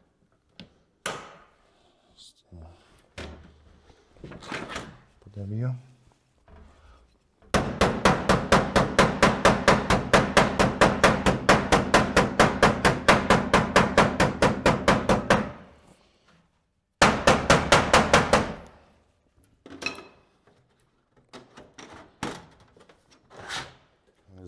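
A tool knocks rapidly and evenly, about five strikes a second, for some eight seconds; a second short run follows about a second and a half later. Handling knocks come before and after.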